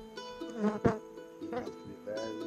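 Honey bees buzzing close to the microphone, the buzz rising and falling in pitch as they fly past, with a sharp tap a little under a second in.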